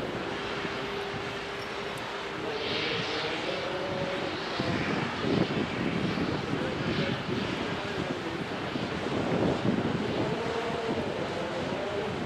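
Mein Schiff 2 cruise ship passing close, its machinery making a steady drone over wind and water noise. A held tone in the first few seconds gives way to wavering, shifting sounds.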